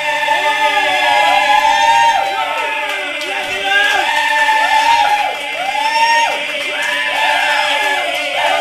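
Several voices singing together in repeated rising-and-falling phrases over a held chord.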